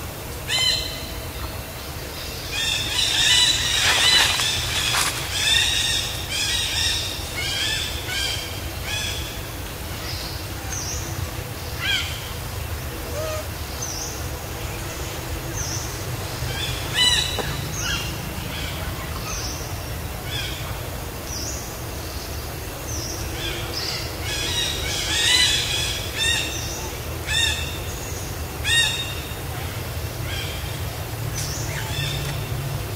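High-pitched animal calls, short squawks and chirps. They come in two quick runs, one a few seconds in and one near the end, with single calls in between, over a steady low rumble.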